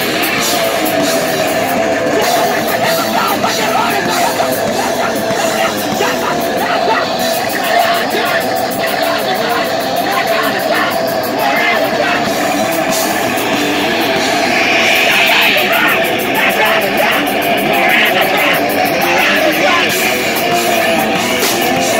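A live heavy punk/metal band playing loud and without a break: distorted electric guitars, electric bass and a pounding drum kit.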